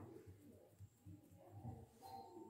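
Near silence, with faint cooing of a bird in the background.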